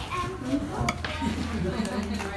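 Background chatter of several people talking at a table, quieter than the nearby speech, with one brief click a little under a second in.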